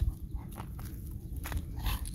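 A golden retriever walking close by on a concrete path, with a few light clicks of its steps and a louder breathy sound near the end, over a steady low rumble.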